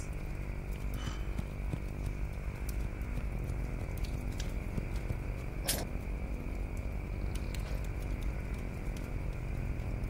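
A steady low background hum, with one sharp metallic clink a little past halfway: a set of car keys dropping onto the ground.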